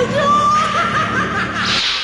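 A cartoon character's long, high-pitched, wavering villain laugh in a male voice, with a burst of hiss near the end.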